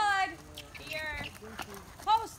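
A raised voice calling out in short, high-pitched bursts: a loud call right at the start and a shorter, fainter one about a second in.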